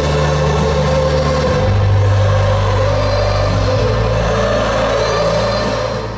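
Live stadium concert music with sustained deep bass notes, fading down at the very end.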